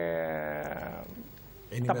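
A man's drawn-out hesitation sound "eh…", held on one vowel and sliding slightly down in pitch before fading about a second in. After a brief breathy pause, speech resumes near the end.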